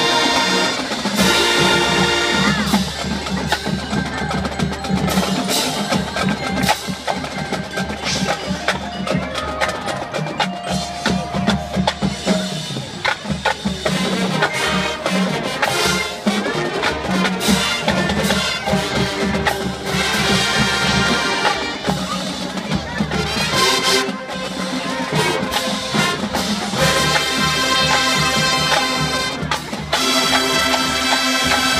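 High school marching band playing its halftime show, sustained band chords over drums, with struck mallet percussion prominent.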